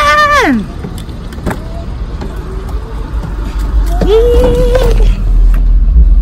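Car door unlocked and opened as a person climbs in, with a few short clicks about a second in. From about halfway a heavy low rumble fills the car's cabin.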